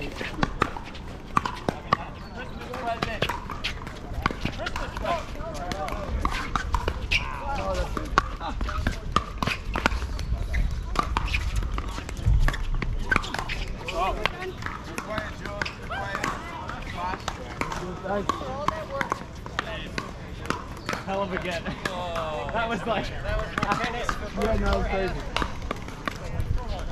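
Pickleball paddles striking the hollow plastic ball during a doubles rally: sharp pops at irregular spacing, some in quick runs as the players trade shots at the net. Voices talk in the background.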